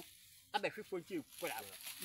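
A man talking in short, animated phrases after a brief pause, over a faint steady high hiss.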